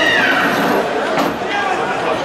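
A high-pitched shout that falls in pitch over about the first second, over the constant chatter of a crowd in a sports hall.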